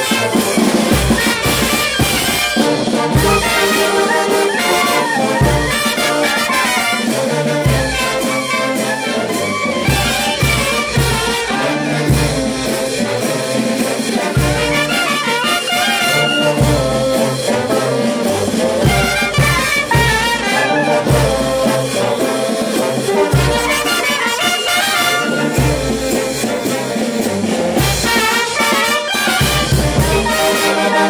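Peruvian brass band playing a folkloric march (marcha folclórica): trumpets, trombones and saxophones play over a steady bass-drum beat and crash cymbals.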